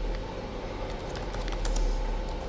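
Computer keyboard keys clicking in an uneven run of keystrokes as a command is typed, a little busier near the end, over a steady low hum.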